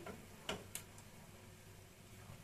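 A few light clicks and clinks of kitchenware being handled, three within the first second, then only a faint steady low hum.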